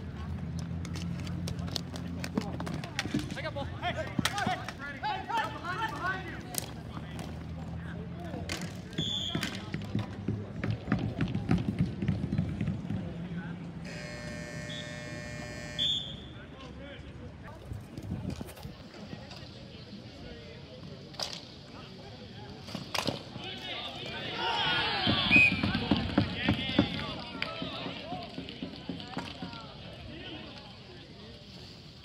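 Ball hockey play on an outdoor court: sharp clacks of sticks and the ball hitting the court and boards, under scattered voices of players. About 25 seconds in comes a louder burst of shouting as a goal is celebrated.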